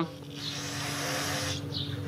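Aerosol solvent cleaner spraying through its straw nozzle onto the cylinder head in one steady hiss, which cuts off after about a second and a half.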